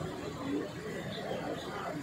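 Indistinct chatter of people's voices, with no clear words.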